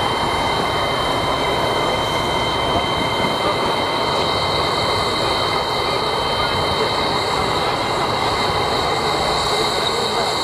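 JNR C57 1 steam locomotive standing in steam: a steady hiss with thin, high steady whines over it, heard close to the cab.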